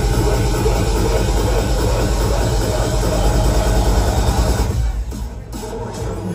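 Loud, bass-heavy electronic dance music from a DJ set played through a club sound system, recorded on a phone. About five seconds in, the upper range drops away and the music gets quieter.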